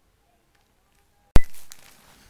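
Near silence, broken about a second and a half in by a single sharp, loud click and a brief fading hiss, the pop of a screen-recording audio track resuming after a pause.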